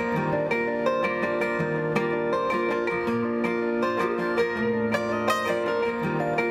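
Acoustic guitar played solo: an instrumental passage of picked and strummed notes ringing over changing bass notes.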